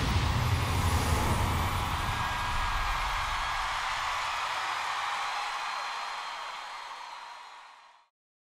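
Logo sting of a TV show's end card: a deep rumbling boom with a bright shimmering wash over it, dying away slowly and fading out near the end.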